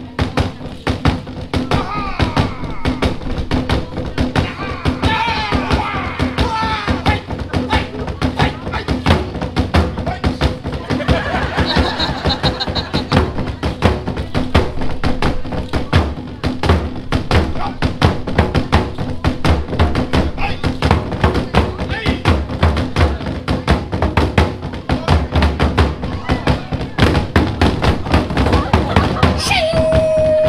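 Fast, rhythmic drumming on Polynesian drums, many strikes a second without a break, as a performer plays a beat and an audience volunteer drums along to copy it. Crowd voices rise over the drumming now and then.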